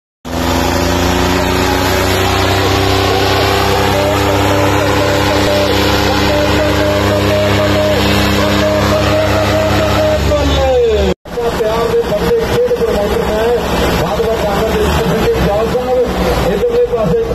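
Tractor diesel engines at full throttle under heavy load in a tug-of-war pull, a steady drone. About ten seconds in, the engine note falls sharply as it lugs down, then breaks off abruptly. A wavering engine note follows over crowd noise.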